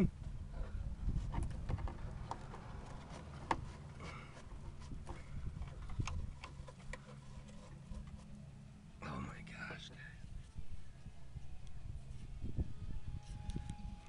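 Rust-rotted steel rocker panel of a 2000 Pontiac Grand Prix GT crumbling as rust flakes are broken away by hand, with scattered small clicks and ticks of debris falling onto pavement, over a low rumble.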